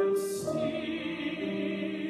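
A man singing in classical musical-theatre style with grand-piano accompaniment. His voice comes in at the start with a short hissing consonant, then carries on in held notes that step to new pitches twice.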